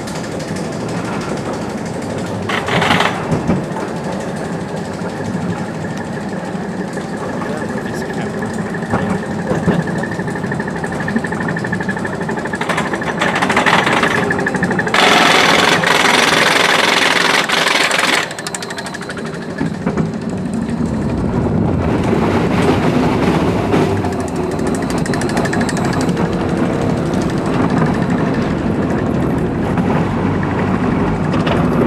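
Roller coaster train climbing a chain lift hill: a steady rapid clatter from the lift chain and anti-rollback, with a faint held whine. Past the crest, about halfway through, a few seconds of loud rushing noise, then a lower, fuller rumble of the train's wheels rolling on the steel track.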